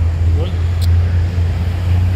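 A steady, loud low rumble of outdoor background noise runs throughout. It is broken by one short spoken word near the start and a single sharp click just under a second in.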